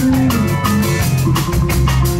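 Instrumental funk band playing live: electric guitar, electric bass and keyboard over a drum kit keeping a steady, busy beat with cymbal strokes.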